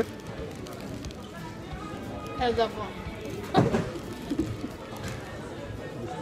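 Fast-food restaurant ambience: background music and the murmur of other voices, with a man's short grunt of speech about two and a half seconds in.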